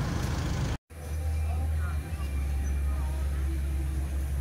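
Open-air ambience: a steady low rumble with faint chatter of people in the background, cut off by a brief dropout just under a second in.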